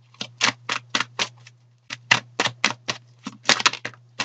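A deck of tarot cards being shuffled by hand: runs of crisp card snaps at about four a second, with a short pause about halfway through and a quick flurry near the end.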